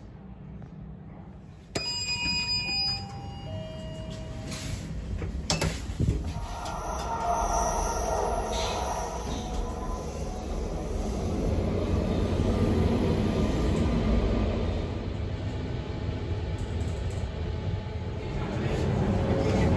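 Glass passenger lift in a metro station: a short descending chime of a few notes, a thump about six seconds in, then a steady low rumble as the lift runs.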